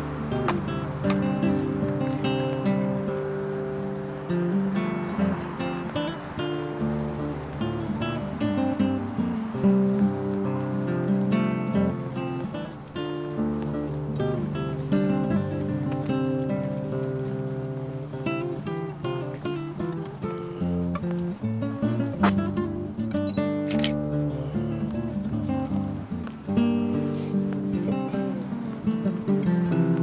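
Background music: an acoustic guitar strumming chords at a steady pace.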